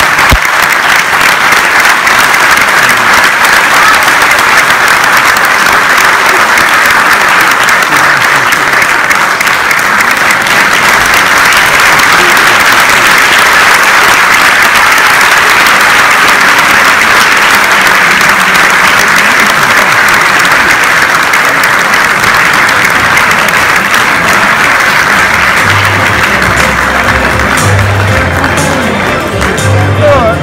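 Theatre audience applauding, a loud, steady clapping that goes on throughout. Music with low bass notes comes in under it near the end.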